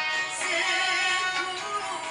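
Dangdut song playing with a singer's voice over the band, holding a long note with a steady vibrato through the middle.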